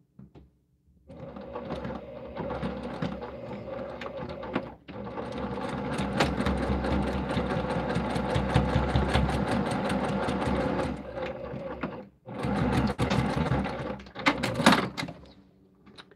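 Sewing machine stitching in three runs, about four, six and three seconds long, with brief stops between them, sewing the boxed corners of a small fabric bag.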